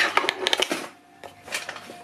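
Rapid clicks, knocks and rustles of objects and a handheld camera being handled while things are put away, dense in the first second and then sparser.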